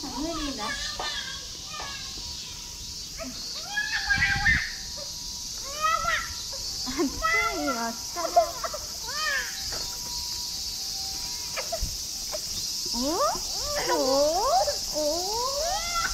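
Cicadas droning steadily in the shrine's trees. Over them, a small child's high voice chatters and calls, with long up-and-down sliding calls near the end.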